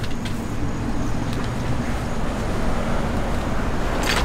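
Steady outdoor background rumble like road traffic, with a faint low hum and a few light clicks.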